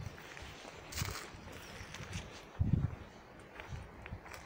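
Footsteps on a forest path covered in dry leaves and pine needles: a few separate soft steps.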